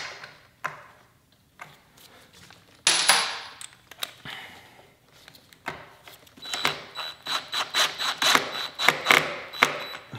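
Small clicks and rustling from hands working on a scooter's wiring: a few scattered clicks and a short rustle about three seconds in, then a fast run of small clicks over the last four seconds.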